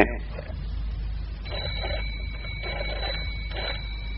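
Telephone sound effect: a steady high electronic tone comes in about a second and a half in, with a faint pulsing sound beneath it, as a call connects.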